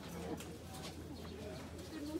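A pigeon cooing, with people's voices in the background.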